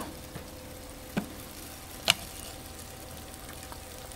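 Faint steady sizzling hiss from a just-opened electric pressure cooker with hot steamed cabbage still in its basket, broken by two light clicks about a second apart, the second louder.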